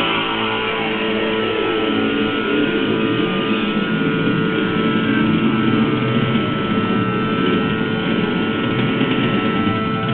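Electric guitar playing a hard-rock part, with notes fretted high on the neck, in a continuous run with no pauses.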